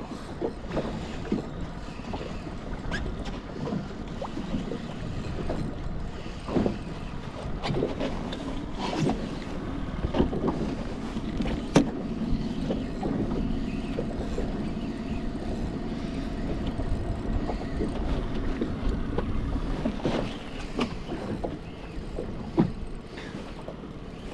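Wind on the microphone and choppy water lapping against a small boat's hull, a steady rush with scattered light knocks.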